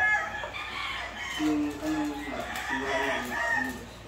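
Gamecocks crowing.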